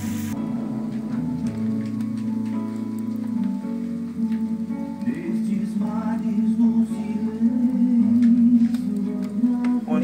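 Background music with slow, sustained notes that change every second or so.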